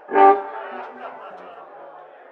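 Crowd chatter in a bar between songs, with one short, loud honking note about a quarter second in.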